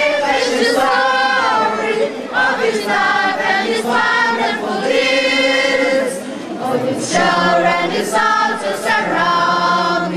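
A choir of voices singing together in held, sustained notes, a liturgical chant or hymn during the Mass.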